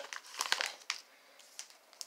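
Plastic binder sleeve pages crinkling as trading cards are handled, a few short crackles in the first second, then quieter.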